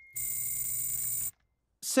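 A steady electronic buzz, about a second long, that cuts off abruptly. After a brief silence a voice starts near the end.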